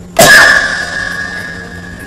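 A sudden loud onset followed by a steady ringing tone that fades over about a second and a half and then stops.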